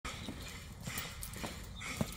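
Footsteps on concrete, a few irregular knocks about every half second as a man walks down a step carrying a stack of cardboard parcels, with a sharper knock at the end.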